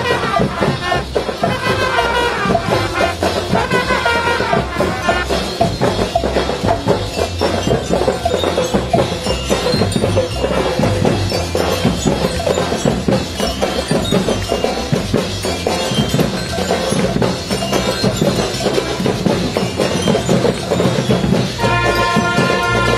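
Live school marching band playing: snare and bass drums keep a steady beat under the music. Trumpets come in strongly near the end.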